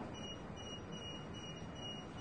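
An electronic alarm sounding a continuous run of short, high-pitched beeps, about three a second.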